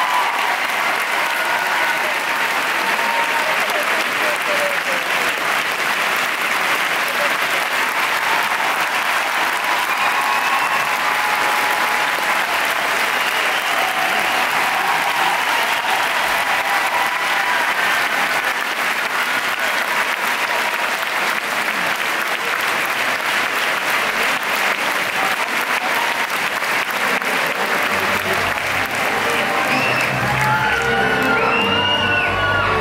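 Large indoor audience applauding steadily, with a few voices over the clapping. Music begins to come in near the end.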